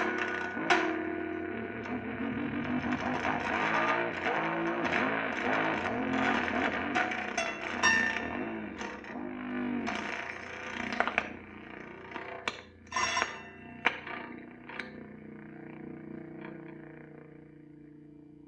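Improvised drone-noise music from a prepared electric guitar run through effects pedals: a dense, wavering, distorted texture with scattered sharp clicks and scrapes. It thins out and fades over the second half.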